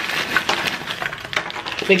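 Green Takis rolled corn tortilla chips pouring out of their bag onto a heap on a tray: a dense crackling patter of small hard clicks.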